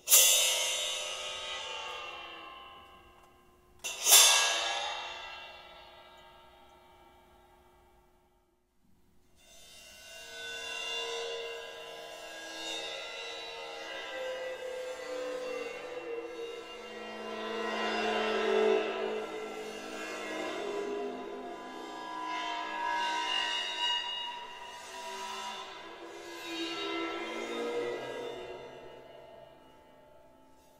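Cymbal on a stand struck twice, about four seconds apart, each hit ringing out and fading. After a short gap it is bowed along its edge for about twenty seconds while it is dipped into a tub of water. This gives a sustained sound of several tones that swell and fade and slide in pitch as more of the cymbal goes under water.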